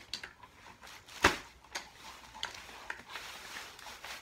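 Umbrella stroller being folded: one sharp click of the frame about a second in, then a few lighter clicks and rattles of its joints as it collapses.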